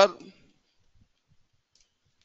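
The end of a spoken word, then near silence broken by a few faint, short computer keyboard clicks as code is typed.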